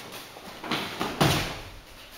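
A thrown wrestler landing on a gym mat after a foot sweep: a brief scuffle of feet and jacket cloth, then one heavy thud of the body hitting the mat a little past the middle.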